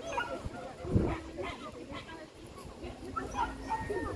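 A dog barking in short yips, loudest about a second in.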